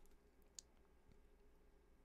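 Near silence: faint room tone, with one short faint click about half a second in.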